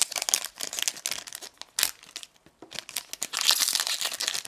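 Foil trading-card booster pack being crinkled and torn open by hand: irregular crackling, with a sharp crack a little under two seconds in and denser crinkling near the end.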